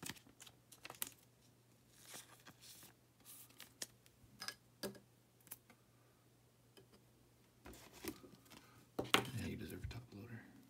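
Thin plastic card sleeve crinkling and rustling as a trading card is slid into it, with scattered small clicks and taps of plastic being handled, and a louder rustle near the end.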